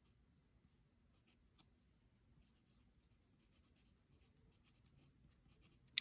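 Faint scratching of a fine-tip pen writing on paper, in short strokes starting about a second in.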